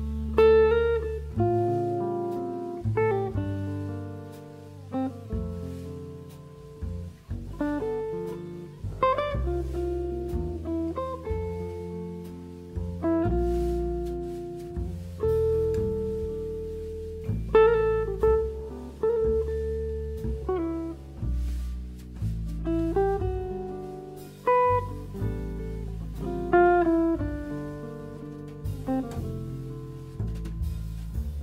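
Archtop hollow-body electric jazz guitar playing a run of plucked single notes and short chords, each note dying away, over bass notes underneath.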